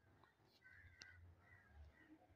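Near silence, with a faint click about a second in.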